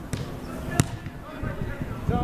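A football kicked once: a single sharp thud just under a second in, over distant voices.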